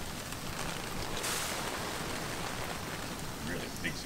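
Overhead garden sprinkler's water pattering on foliage as an even, rain-like hiss, briefly louder and brighter about a second in.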